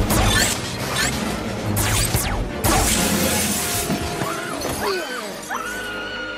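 Sci-fi film action soundtrack: music under a run of sharp blaster-like shots with falling zaps, then a burst of glass shattering about three seconds in, followed by rising and falling shrieking tones.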